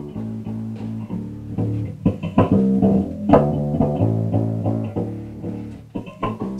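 Bass-guitar music playing loud through a pair of TC Electronic bass combo amps running an endurance test. It gets louder about two seconds in, as the amps are switched over from playing out of phase.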